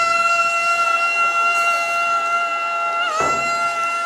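A loud wind instrument holding one long steady note, having slid up into it just before, with a brief waver in pitch about three seconds in.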